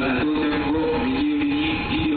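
A simple melody of held electronic tones stepping up and down in pitch, played over a railway platform's loudspeakers.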